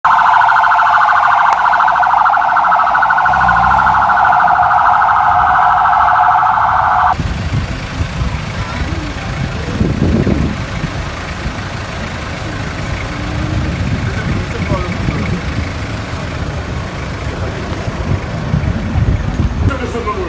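A loud siren warbling very rapidly, with a low pulsing beat coming in about three seconds in; it cuts off abruptly after about seven seconds, giving way to a lower outdoor rumble with faint voices.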